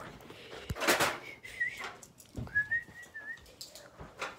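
Whistling: a breathy rush about a second in, then two thin whistled notes, the first short and wavering, the second held nearly level for about a second.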